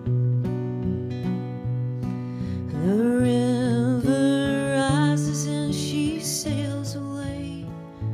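Two acoustic guitars playing picked notes together, with a woman's voice coming in about three seconds in, sliding up into a long held, wavering sung line that ends near six and a half seconds.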